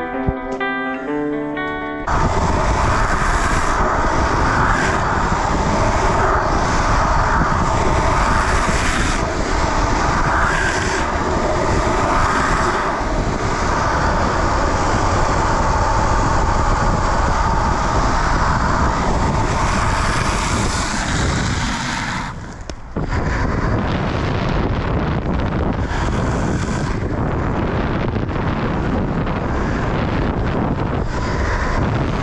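A bit of guitar music ends about two seconds in, then skateboard wheels rolling fast on coarse asphalt with heavy wind noise on the camera microphone, a loud steady rushing that drops out briefly about two-thirds of the way in and then carries on.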